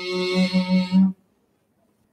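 A male voice chanting Buddhist pirith in Pali, holding the last syllable on one steady pitch. It cuts off abruptly about a second in, leaving silence.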